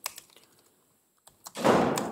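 A few computer keyboard keystrokes, sparse single clicks, as a terminal command is typed and entered. Near the end a short rush of noise fades out.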